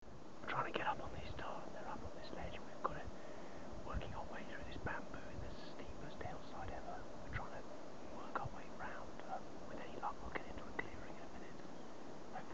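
A man whispering, his words too soft to make out, over a faint steady background hiss.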